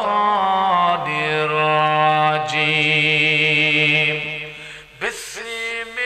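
A man's voice chanting Qur'anic recitation in Arabic through microphones, in a slow, melodic style with long held notes. It breaks briefly for breath near the end, then resumes.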